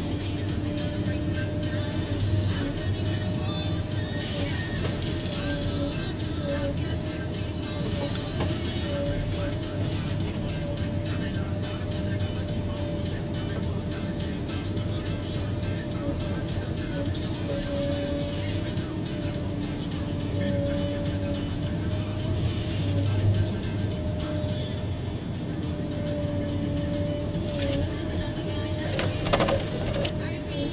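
Forest harvester's engine and hydraulics running under load, heard as a steady drone with a constant whine that wavers slightly as the boom and harvester head move. About a second before the end a brief louder burst comes as the head's chain saw starts a cut.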